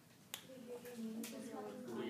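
A single sharp click about a third of a second in, followed by a faint voice speaking from across a classroom.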